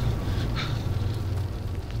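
A low steady rumbling drone under an even windy hiss, with a couple of faint brief hisses near the start.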